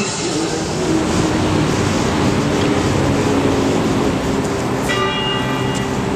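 Electronic ambient soundscape: a wash of rushing noise over a low held tone, with chime-like tones coming back in about five seconds in.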